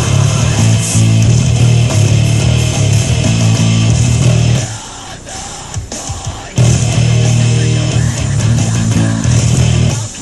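Electric bass guitar played fingerstyle with a loud heavy rock backing of distorted guitars and drums. About halfway through the whole band stops for about two seconds, then comes back in at full level.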